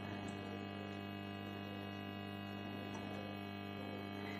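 Quiet room tone: a steady electrical hum with many even overtones and no change in pitch.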